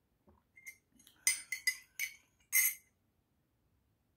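Metal spoon clinking against the inside of a ceramic mug as a drink is stirred: a few soft touches, then about half a dozen sharp, ringing clinks in quick succession, the last one the loudest.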